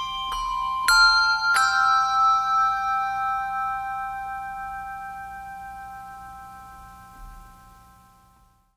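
Handbell choir ringing the closing notes of a piece: two more strikes about a second in, then the final chord of brass handbells rings on and slowly fades away.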